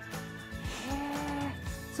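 Background music bed under a radio talk show, with one held note about a second in.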